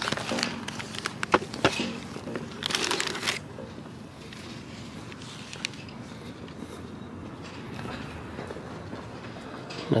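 Scattered sharp clicks and a brief rustle in the first few seconds, then a steady low background noise.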